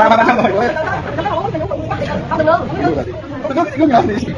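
People chattering and talking over one another.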